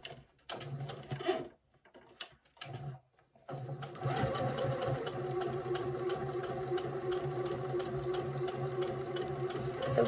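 Sewing machine stitching: a few short stop-start bursts, then running steadily from about three and a half seconds in, sewing up a seam that was accidentally trimmed through.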